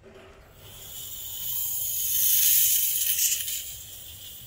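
Compressed CO2 hissing out of a bicycle CO2 inflator as the cartridge is screwed into the inflator head. The hiss is high and swells over about two seconds to a loud peak, then tapers off.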